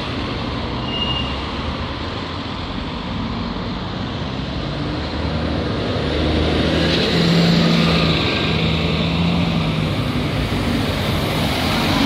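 Single-deck bus engine running at a bus stop and pulling away past close by, over street traffic; the engine grows louder about six seconds in as the bus passes, with a steady engine note strongest soon after.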